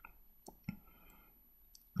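A few faint, short clicks, about three in the first second, from a smartphone being handled as its scrolling picker menu is flicked and the screen tapped.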